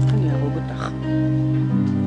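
Instrumental intro of a slow song: held chords over a steady bass, the chord changing near the end, with a short voice sound about halfway through.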